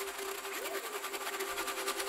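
Isolated ring-modulated electronic sound layer from an ambient track, played on its own: two steady low tones under a rapid buzzy pulsing in the high end, with a faint brief pitch glide that rises and falls just before the middle.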